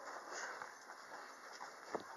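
Faint footsteps and the rolling of suitcase wheels along a hotel corridor floor, with one sharp click just before the end.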